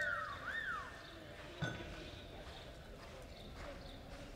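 A horse's hooves on arena dirt. In the first second there is a quick run of short rising-and-falling chirps, and about a second and a half in there is a single sharp knock.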